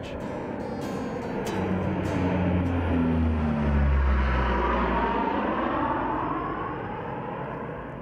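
Military aircraft flying low overhead: a rumble that swells to its loudest about four seconds in, its low tone falling as it passes, then fades away.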